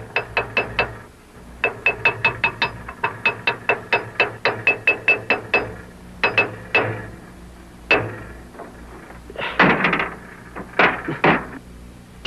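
A hammer rapidly banging on an old car's sheet-metal body panels, sharp ringing metallic strikes about five a second, then a few slower, heavier blows and a brief clatter of metal near the end.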